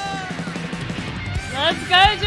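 Live rock band music: a held note fades out early, drums keep hitting, and a voice with gliding pitch comes in near the end.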